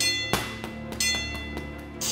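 Boxing gloves landing light punches on a heavy bag, a few dull hits about a second apart, over background music with bell-like notes about once a second.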